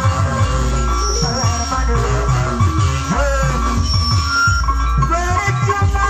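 Live band music played loud over a sound system: steady, busy drumming under a gliding, wavering melody line.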